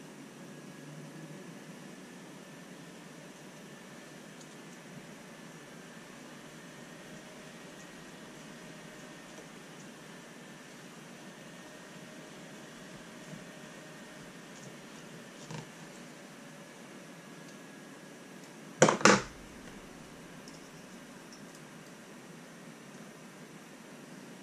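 Steady low room hiss with faint handling of small parts, then a single sharp double knock, as of a hard object striking the desk, about two-thirds of the way through.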